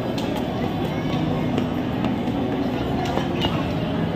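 Ambience of a busy indoor ice rink: steady scraping and hissing of skate blades on the ice under the chatter of many voices, echoing in the hall. Scattered sharp clicks and knocks are heard every half second or so.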